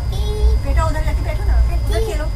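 A young boy's high voice talking in short phrases over the steady low rumble of a train carriage.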